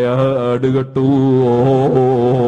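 A man's voice chanting in a slow, drawn-out melody, in the sung style of Quranic recitation. After a few short phrases it settles into one long held note about a second in.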